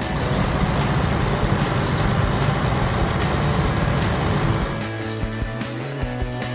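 Cartoon truck engine sound effect passing by over background music, a loud rough noise that fades out about five seconds in, leaving the music.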